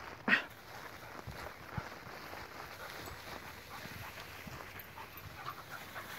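A spaniel gives one short, sharp bark about a third of a second in, then its running through tall crop makes a quieter, continuous rustling.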